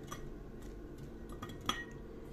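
Chopped onion tipped from a glass bowl into a glass jar: a few faint soft taps, then one sharper clink against the glass with a brief ring, near the end.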